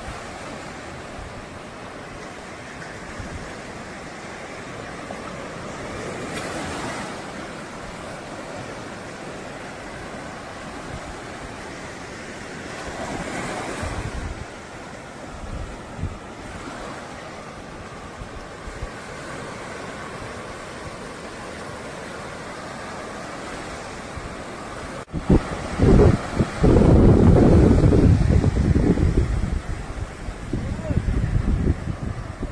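Sea surf breaking and washing up a sandy beach in a steady rush, swelling twice in the first half. Near the end, loud wind buffets the microphone.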